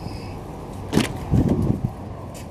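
Rear door of a 2009 Honda Accord being opened: a sharp click of the handle and latch about a second in, then half a second of lower knocking and rustling as the door swings open.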